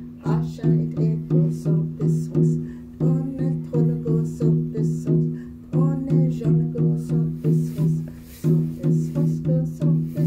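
Hand-held frame drum struck with a beater in a steady beat of about three strokes a second, each stroke ringing with a low, pitched tone; the beat breaks off briefly a few times between phrases. A woman's singing voice comes in over the drum in places.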